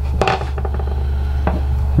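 Small handling sounds from a charger's DC plug and its cut-off rubber boot being worked by hand: a few light rustles and clicks just after the start, and a short tap about one and a half seconds in as a piece is set down on the wooden bench. A steady low hum runs underneath.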